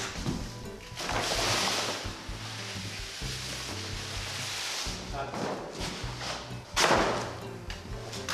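Background music with a bass line stepping between low notes, overlaid by a burst of rustling noise about a second in and a sharp thump near the seventh second.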